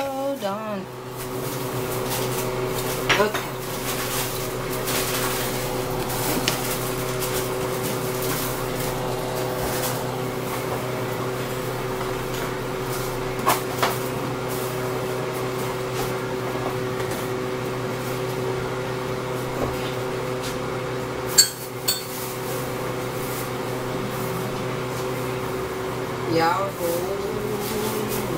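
A steady hum from a kitchen appliance, with a few scattered clinks and knocks of pots and utensils; the sharpest knock comes near the end.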